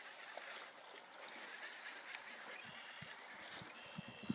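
Quiet pond-bank background: a faint steady hiss with faint insect chirps, and a few soft low knocks in the second half from handling a baitcasting rod and reel.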